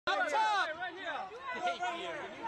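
People's voices talking, with the loudest speech in roughly the first half-second and quieter chatter after it; no words can be made out.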